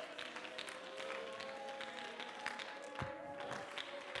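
Faint, held chords of soft worship music with a few scattered hand claps from the congregation.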